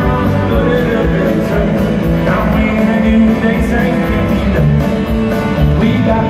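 Country band playing live in an arena: electric guitars and drums, heard from the audience seats.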